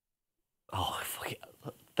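Dead silence, then under a second in a man's voice starts speaking softly, close to a whisper, before rising to normal talk.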